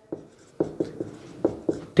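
Marker pen writing on a whiteboard: a quick series of short strokes and taps as letters are written.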